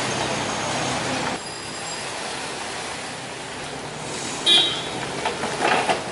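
Mini excavator engine running over street traffic. From about four and a half seconds in come a brief high-pitched squeal and a few sharp metallic knocks as the bucket works the dug-up mud.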